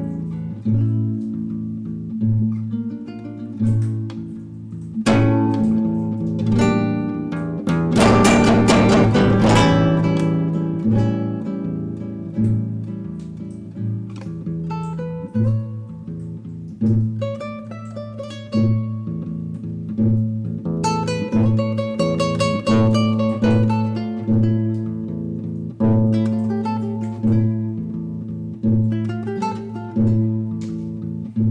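Classical guitar played fingerstyle: a slow, pretty melody of plucked notes over a repeating bass note. About eight seconds in comes a brief burst of fast strummed chords, the loudest part.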